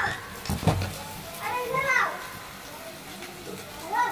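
A young child's high-pitched voice calling out in short rising-and-falling calls, about twice, with a sharp knock a little over half a second in.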